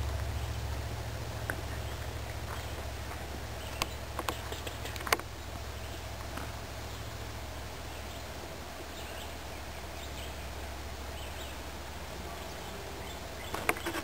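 Low rumble of wind and handling noise on a handheld camera's microphone while walking a forest trail, easing off after the middle, with a few scattered light clicks.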